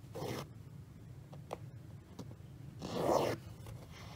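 Cotton embroidery floss being pulled through 14-count aida fabric: a short swish at the start and a longer, louder one about three seconds in, with a few faint ticks between.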